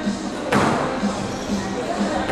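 A squash ball struck hard by a racket: one sharp smack about half a second in, echoing around the court.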